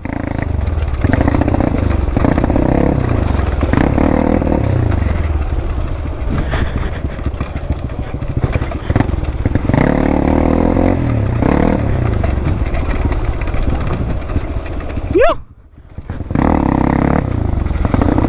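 Dirt bike engine running while descending a rocky track, its revs rising and falling repeatedly as the throttle is blipped and let off. About three-quarters of the way through, the sound drops away briefly, then the engine picks up again.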